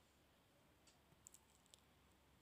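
Near silence: faint room tone with a few small, sharp clicks about a second in.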